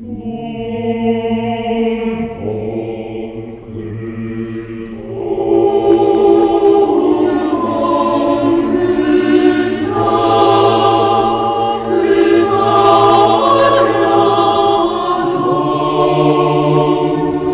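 Mixed choir of men's and women's voices singing an Orthodox hymn a cappella: long held chords over a low sustained bass note, swelling fuller and louder about five seconds in.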